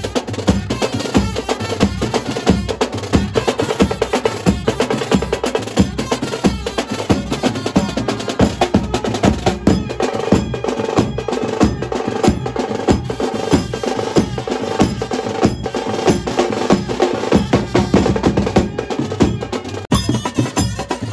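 Koliwada brass band playing loudly: trumpets and saxophones over a fast, busy beat of snare drums and a bass drum.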